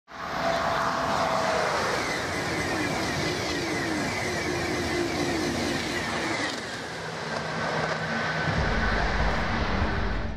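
A Eurostar high-speed electric train passing at speed: a steady rushing noise of wheels and air with faint whining tones, joined by a deeper rumble near the end.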